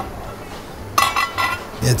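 Enamelled steel stockpot lid clinking against the pot as it is lifted off: a short cluster of metallic clinks with a brief ring about a second in.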